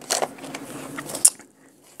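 Rustling and light clicks of recipe books and a small metal recipe tin being handled and shifted, with one sharper click about a second in.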